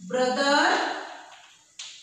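A woman's voice drawing out a single word with falling pitch, then a sharp tap near the end, like chalk striking a blackboard.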